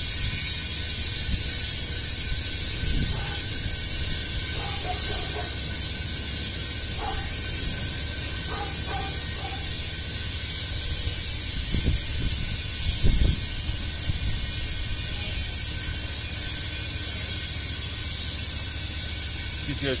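Steady hissing noise over a low engine rumble from a Ditch Witch machine working nearby, with a couple of knocks about twelve seconds in.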